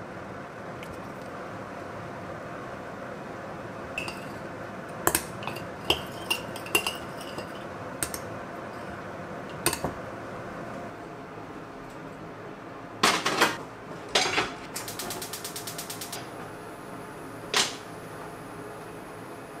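Metal spoon clinking and scraping against a glass mixing bowl while stirring a ginger, soy sauce and mirin marinade, in sharp separate clinks. Later come a few louder clatters of kitchenware and a short quick run of ticks.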